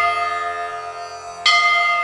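A bell in devotional intro music, ringing out from a strike just before and struck again about a second and a half in, over sustained low drone notes.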